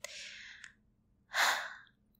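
A young woman's close-miked breathing: a soft sigh trailing off with a small mouth click, then a louder breath about a second and a half in.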